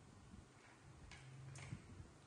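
Near silence: room tone with a few faint small clicks and a faint low hum.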